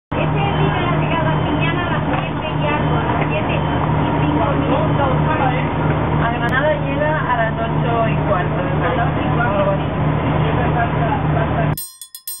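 Steady low drone of a train standing at the platform with its diesel engine running, with several people talking indistinctly over it. It cuts off abruptly just before the end.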